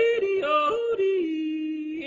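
Theme music with a singing voice yodelling, leaping back and forth between a low and a high note, then holding one steady note.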